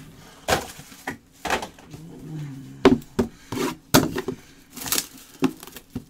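Cardboard trading-card boxes being handled and opened with gloved hands: a series of about eight sharp, irregular knocks and scrapes of cardboard against the table.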